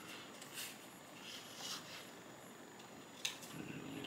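Scissors cutting a curved shape out of a sheet of paper: a few faint, short snips, then a sharper click near the end.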